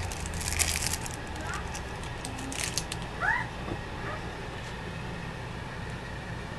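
Trading cards clicking and sliding against each other as a pack is flipped through by hand, over a steady low hum. A short rising chirp about three seconds in.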